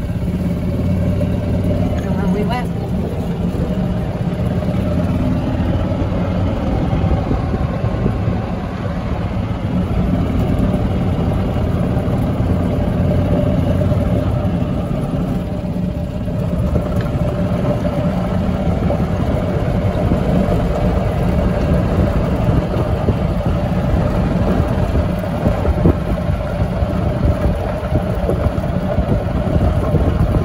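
Golf cart being driven: a steady low motor hum and rumble with tyre and wind noise. The tyres run over a gravel cart path in the second half.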